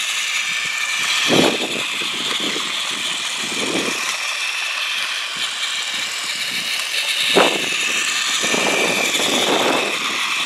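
Plarail Mickey Mouse Magical Express toy train's battery motor and gearbox whirring steadily as it runs on plastic track, with two sharp knocks, about a second and a half in and again about seven and a half seconds in. A louder rumble swells near the end.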